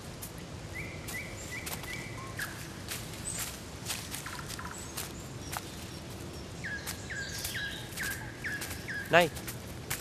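Forest ambience with a bird calling in two runs of short, level whistled notes, and faint scattered clicks over a steady background hiss. A man's voice calls out once near the end.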